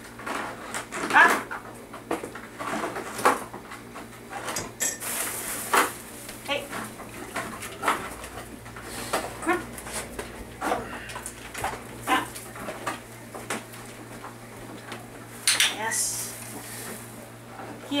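Dishes and cutlery clinking and knocking at a kitchen counter in scattered sharp clicks, with a brief hiss about five seconds in and again near the end.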